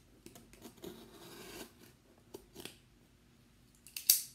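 Faint handling of a cardboard shipping box: hands rubbing and scraping on the cardboard, with a few small clicks and taps.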